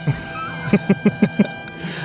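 A short musical sound effect fired from a Rodecaster Pro sound pad, held tones that end just before the two-second mark. A man laughs over it, in a quick run of 'ha's about a second in.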